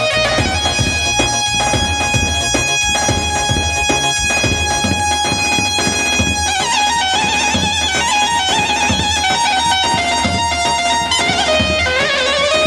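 Amplified Kurdish wedding dance music for a halay line dance, played over loudspeakers: a steady drum beat under a held, ornamented melody. About halfway through, the melody moves into a wavering, quicker line.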